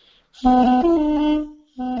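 Armenian duduk playing a short legato phrase whose notes are separated only by quick finger strikes on the tone holes instead of tongued staccato. A low note breaks upward briefly, then settles on a held, slightly higher note that fades out, and a new phrase begins near the end.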